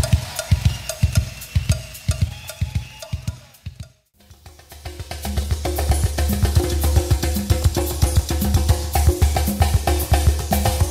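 Drum kit and percussion playing, fading out to a brief gap of silence about four seconds in. A new drum groove then starts with a steady low bass note under it.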